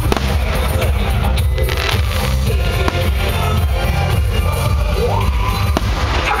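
Loud music with a heavy, steady bass, with a few sharp aerial fireworks bangs standing out over it: one just after the start, one midway and one near the end.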